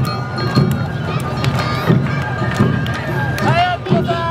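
Awa Odori festival music with repeated drum beats under held melody notes. Near the end, high voices call out over it.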